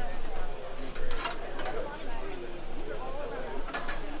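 Background chatter of people talking, with a few sharp metallic clanks as a stainless-steel portable gas grill's pizza-oven top is lifted off.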